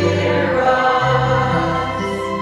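Mixed church choir of men and women singing a hymn in held chords, with electric keyboard accompaniment. The chord changes about a second in.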